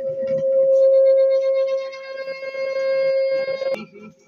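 Public-address microphone feedback: a steady howl at one pitch that grows richer with overtones, then cuts off suddenly with a click near the end.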